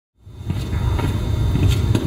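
A low, steady rumble of room background noise that comes up a moment in, with a few faint knocks.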